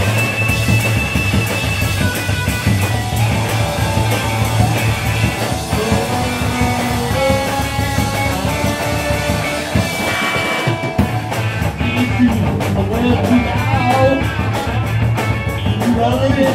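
Live garage rock band playing an instrumental stretch: electric guitar and bass over a drum kit, with a tambourine. About two-thirds through, the bass and drums drop out for a moment before the full band comes back in.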